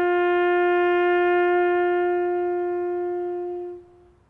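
Solo brass instrument holding one long, steady note that fades away near the end.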